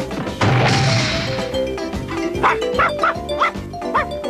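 Cartoon crash sound effect about half a second in, as the armchair bursts the front door off its hinges, followed by several short dog barks, over background music.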